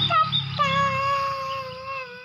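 A young girl's voice: a few short sounds, then one long high-pitched squeal held for well over a second, sliding down a little in pitch and fading near the end.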